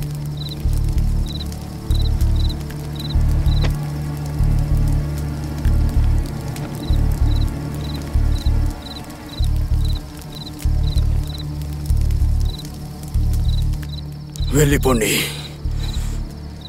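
Suspenseful horror film score: low bass pulses, one or two a second, under a steady row of high cricket-like chirps. A voice speaks briefly near the end.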